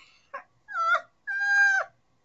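A woman's high-pitched squeals of excitement: a short yelp, then two whining squeals, the last held steady for about half a second.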